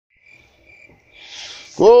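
Faint chirping of night insects, then near the end a voice breaks in with a loud, long sung call of "Oh!", the opening cry of a corroboree song.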